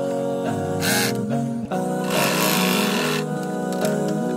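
Background music with sustained notes, over a white domestic electric sewing machine stitching fabric, heard most clearly for about a second in the middle.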